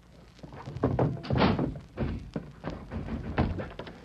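Radio-drama sound effects: a run of irregular thuds and knocks on a wooden door that is bolted shut.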